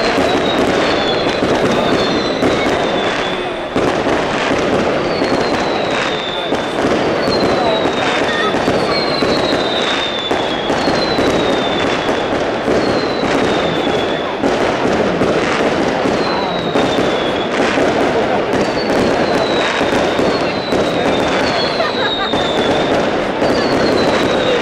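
Moschetteria fireworks: a continuous rapid barrage of bangs with no break, over which whistling fireworks sound every second or two, each whistle falling slightly in pitch.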